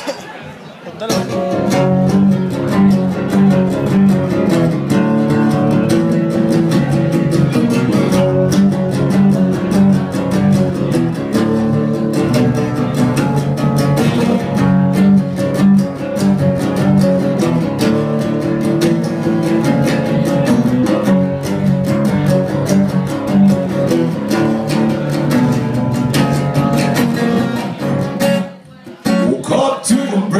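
Acoustic guitar played solo through the venue's amplification, a steady rhythmic instrumental intro of repeated chords and picked notes. It starts about a second in and breaks off briefly near the end.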